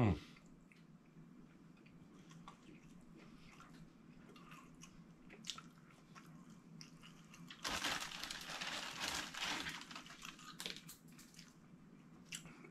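Faint eating sounds, then about two and a half seconds of crackly crinkling and crunching near the end, from a plastic bag of tortilla chips being handled.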